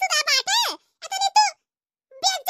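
A very high-pitched, squeaky, sped-up cartoon voice chattering in short syllables, falling silent about one and a half seconds in.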